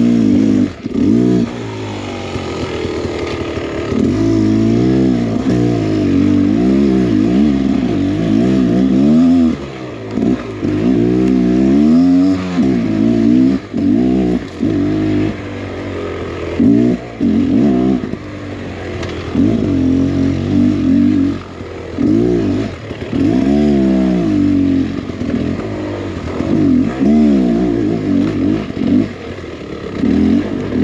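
Two-stroke engine of a Beta X Trainer 300 dirt bike being ridden on a trail, its note rising and falling in quick swells as the throttle is worked, with a few brief dips where it drops off.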